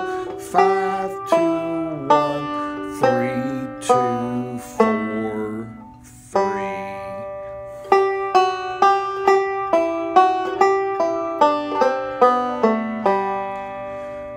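Recording King M5 five-string banjo picked note by note with fingerpicks, a melodic-style lick played at slow practice speed. Single ringing notes come about a second apart, then a short pause a little past the middle, then an even run of about three notes a second.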